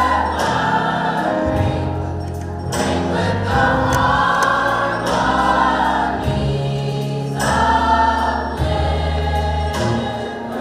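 A choir of voices singing together in harmony over long, low bass notes. Phrases break off briefly about three seconds in and again after about seven seconds.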